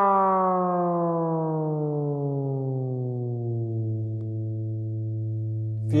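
Sustained electric guitar note through a Digitech Whammy Ricochet pitch-shifter pedal, slowly gliding down about an octave over several seconds and then holding at the lower pitch, like a falling siren.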